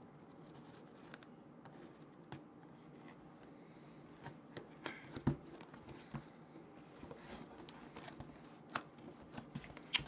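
Faint scraping, rustling and scattered light clicks of a knife working through the packing tape of a cardboard shipping box as the box is handled.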